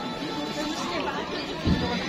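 Crowd chatter: many people talking at once in the street around the stalls. A short, dull thump near the end is the loudest sound.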